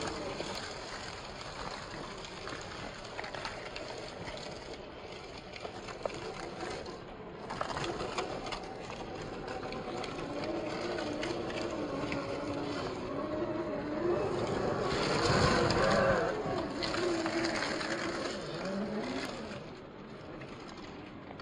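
A 1/10-scale RC crawler's brushed 540 electric motor and gear drivetrain whining at low, wavering pitch, with crunching of dry leaves and rock under the tyres, the sound slowed to half speed. The whine grows loudest about three quarters of the way through, then fades.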